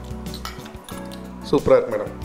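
Background music with a few light clinks of cutlery on a plate, and a short burst of voice near the end.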